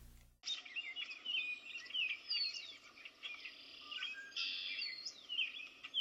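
Birds chirping and singing, a busy run of quick rising and falling notes that starts about half a second in.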